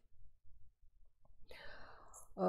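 A faint pause in the talk with low room hum, then a breath drawn in about a second and a half in, just before speech resumes.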